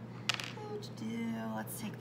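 A woman's short hummed "mm" filler, held on one pitch, with a sharp click about a third of a second in as a small clay tool is picked up off the wooden table, and a few lighter clicks of handling.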